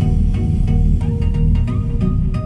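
Electronic music with heavy bass, a steady beat and repeated plucked notes, played during a sound test through a Zebronics BT4440RUCF 4.1-channel speaker set with subwoofer.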